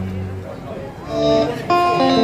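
Electric guitar played by a street busker through a small portable amplifier, with sustained chords and notes ringing out; the playing gets suddenly louder about a second in.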